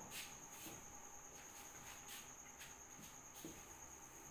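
Faint soft swishes of a duster wiping a whiteboard, about two strokes a second, over a steady faint high-pitched whine.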